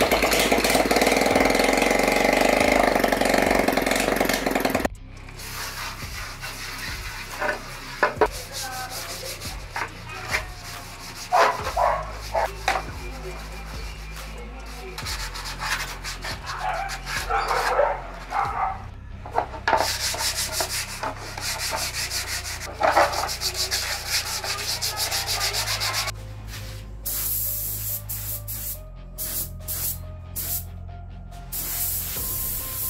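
GY6 single-cylinder four-stroke scooter engine running with its CVT belt drive uncovered, ending about five seconds in. Then hands rubbing and sanding the plastic front body panel in short, irregular strokes.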